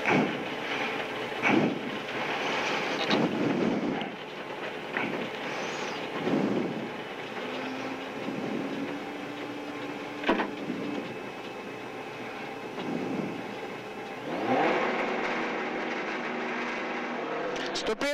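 Subaru Impreza WRX STi rally car's turbocharged flat-four engine running near idle with short throttle blips, heard from inside the cabin. About three-quarters of the way through, the revs climb and are held higher and louder.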